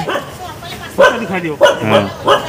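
A dog barking a few times in short, sharp barks, starting about a second in.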